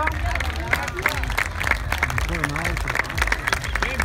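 Audience applauding with scattered clapping, while voices talk in the crowd.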